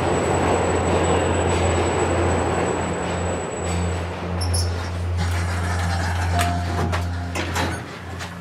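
Subway train running past a platform: a steady rush of rail noise over a low hum, with a thin high whine that stops about four seconds in. After that it is heard from inside the car, lighter, with a few clicks and knocks near the end.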